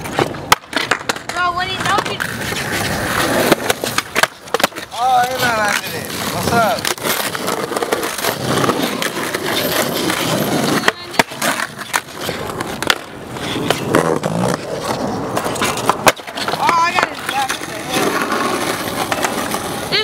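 Skateboard wheels rolling on asphalt, broken by several sharp clacks of tail pops, landings and board hits on a metal handrail. Voices call out between the tricks.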